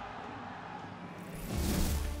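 Faint background music fading away, then a rising swoosh of noise about a second and a half in: a transition sound effect under an on-screen graphic change.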